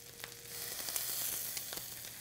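Ground beef and shredded cabbage-and-carrot slaw sizzling in a hot stainless steel frying pan as soy sauce is poured in. The sizzle gets louder about half a second in.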